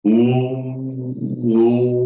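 A man's voice holding a long, steady chant-like tone on one pitch, its vowel shifting slightly about one and a half seconds in, then breaking off briefly near the end.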